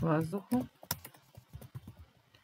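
Typing on a computer keyboard: a run of irregular key clicks, one louder than the rest about a second in.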